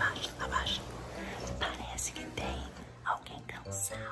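People talking quietly, much of it whispered.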